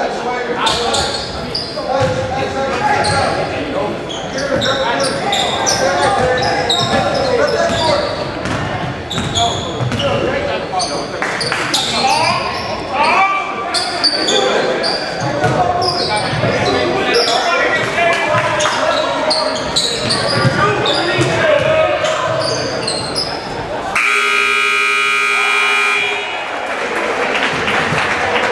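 Basketball game in a gym: sneakers squeaking on the hardwood, the ball bouncing, and players and spectators calling out. About two seconds before the end the scoreboard buzzer sounds a steady buzz, ending the quarter.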